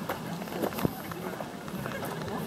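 Indistinct voices of people talking in the background, with a sharp click a little under a second in.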